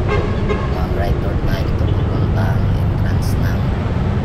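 Motorcycle engine running steadily with road and wind noise on the microphone while riding.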